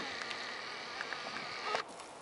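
A flying insect buzzing close by with a slightly wavering pitch, cutting off suddenly near the end.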